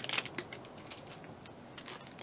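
Plastic packaging handled and set down: a cellophane-wrapped roll of washi tape giving a few soft crinkles and light clicks at the start and again near the end.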